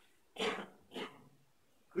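Two short coughs from a man, about half a second apart, the second fainter, in a small, echoing church.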